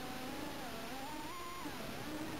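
Micro FPV quadcopter's motors whining in flight as a thin, steady tone. The pitch rises about a second in and drops again near the end.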